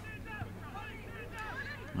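Faint, distant voices of players and spectators calling across a soccer ground, over a low steady hum.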